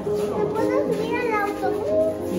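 Background music with held notes, and people's voices, a child's among them, talking over it.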